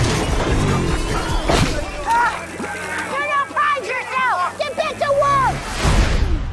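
Film trailer soundtrack: music over a steady bass, with a sharp hit at the start and another about a second and a half in. From about two seconds in, many overlapping voices rise and fall in pitch.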